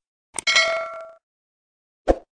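Subscribe-button animation sound effect: a click about half a second in, then a bright bell-like ding that rings for under a second.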